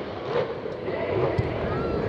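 Steady wind noise on the microphone, with a single low thump about one and a half seconds in.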